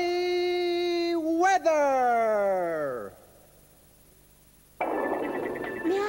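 Cartoon title-card sting: a held electronic-sounding tone that slides steadily down in pitch and fades away, followed by a short near-silent gap. Another sound starts near the end.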